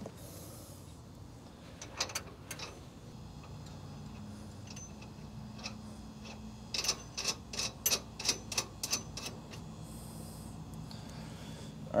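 Metal clicks of a bolt and nut being fitted by hand at a hydraulic cylinder's mounting eye: a few clicks about two seconds in, then a quick run of about ten clicks a few seconds later, over a faint steady hum.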